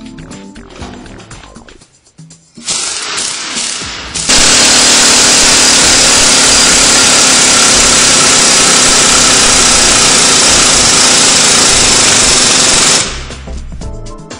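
Pneumatic coil-spring compressor running on a car suspension strut: a few short blips, then a very loud steady run of air-tool noise for about nine seconds as it compresses the spring, cutting off suddenly near the end.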